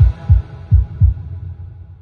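Heartbeat sound effect: two deep double thumps, under a second apart, over a low hum that fades away.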